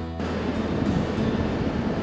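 Steady rushing noise of sea surf.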